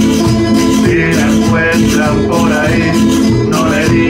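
Live folk music: a nylon-string classical guitar strummed together with a large rope-tensioned bass drum beaten with a stick. A man's singing voice comes in about a second in.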